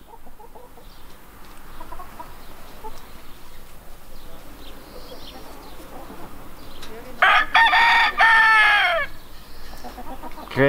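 Appenzeller Barthuhn rooster crowing once near the end: a couple of short notes leading into a long held note that falls away at its close. A rooster of this breed crows little.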